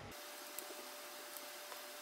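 Faint room tone: a low hiss with a thin steady tone, and a soft tick about half a second in.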